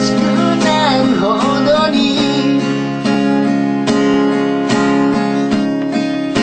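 Acoustic guitar strummed in steady chords, accompanying a male voice whose sung line fades out about two seconds in, leaving the guitar alone.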